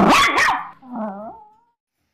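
A dog barking twice in quick succession, then giving a quieter, wavering whine.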